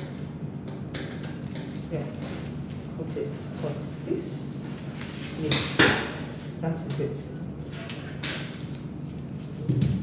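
Metal scissors snipping through a paper pattern, a string of short crisp clicks. About halfway through comes a louder rustle and clatter, the loudest sound, as the paper is handled and the scissors are put down on the wooden table.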